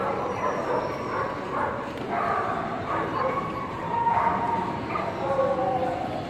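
A dog yipping and whining in short high calls, over steady crowd chatter in a large hall.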